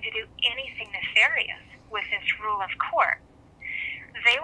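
Speech heard over a telephone line, thin and narrow-sounding, with a short pause near the end.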